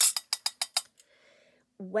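Wet fan brush tapped rapidly against the rim of a small metal water pot, about eight quick clinks in under a second, shaking off the excess water.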